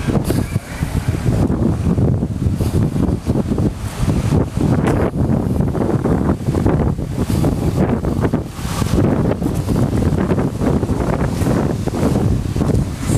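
Wind buffeting the microphone: a loud, uneven low rumble that rises and falls throughout.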